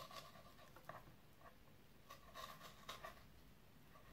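Faint, intermittent scraping of a knife blade sliding between sea bream skin and flesh against a plastic cutting board, as the skin is cut away from the fillet.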